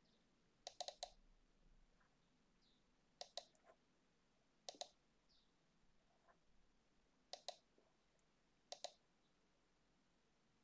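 Faint computer mouse button clicks in quick pairs, five bursts spaced one and a half to two and a half seconds apart.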